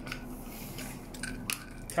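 Screw cap of a plastic supplement bottle being twisted open by hand: a few faint clicks, the sharpest about one and a half seconds in.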